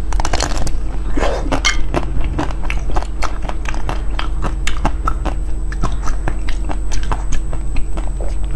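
Close-miked biting and chewing of a soft, filled green ball of food, with many small sharp mouth clicks and crackles several times a second.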